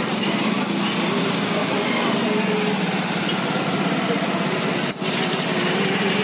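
Engines of trucks and motorcycles running steadily at slow procession pace, under a crowd's voices, with a short pop about five seconds in.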